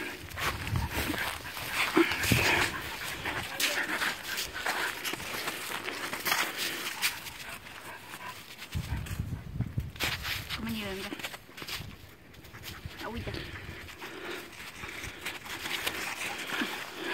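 Irregular crunching and rustling of footsteps and paws on patchy old snow and dry grass as people and dogs move about, with faint brief voice or whine sounds after the middle.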